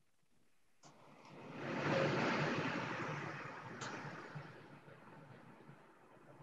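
A rush of noise with no pitch, heard over a video-call microphone. It begins with a faint click about a second in, swells over the next second and then fades slowly over about three seconds.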